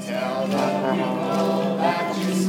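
A live folk band and many voices singing a chorus together over acoustic guitars, with a steady low note held underneath.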